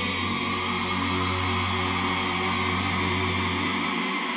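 Male a cappella vocal group holding a sustained chord in close harmony, over a steady deep bass note that cuts off near the end.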